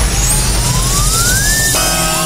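A radio sound effect: one clean tone sweeping steadily upward for about a second and a half over a low rumble. It breaks off just before the end, when a music jingle with held chords comes in.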